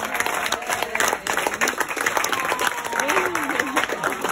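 A small group of people applauding, with a few voices calling out over the clapping.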